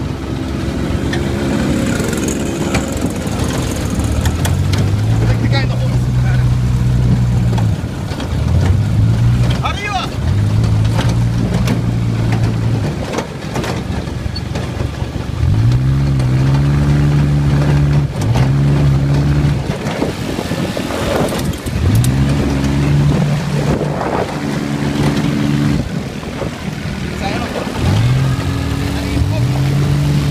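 Open off-road buggy's engine accelerating over and over on a bumpy dirt track. Its pitch climbs and levels off every couple of seconds as the throttle is opened and eased.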